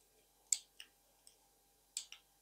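Short, sharp plastic clicks from fan cable connectors being handled and pushed into the ports of an ARGB fan controller hub: a loud click about half a second in, a softer one just after, a faint one, and another sharp click at the end.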